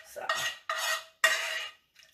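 Metal spoon stirring melted butter in a metal frying pan, scraping against the pan in three strokes about half a second apart, each with a light metallic ring.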